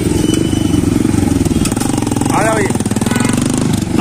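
Motorcycle engine running close by, a fast, even low pulsing from its exhaust, with a brief spoken word about halfway through.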